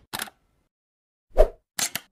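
Short sound effects of an animated logo intro: a brief burst just after the start, a louder pop about a second and a half in, then two quick clicks near the end.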